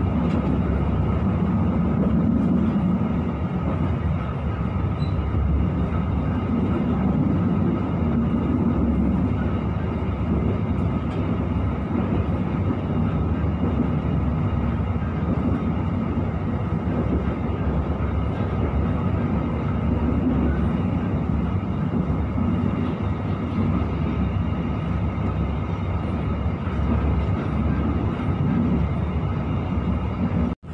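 Steady running noise inside a coach of the Joglosemarkerto passenger train moving at speed: an even rumble of wheels on the rails.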